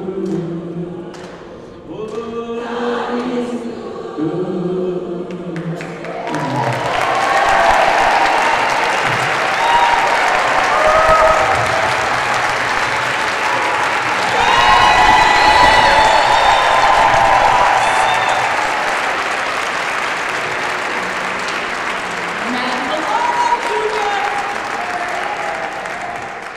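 A gospel choir sings its final held phrase, then about six seconds in the audience breaks into loud applause with voices cheering, which carries on through the rest.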